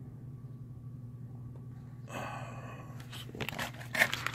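Low steady background hum, then paper rustling and crinkling from about two seconds in, becoming a run of small irregular crackles near the end as the paper and packing slip are handled.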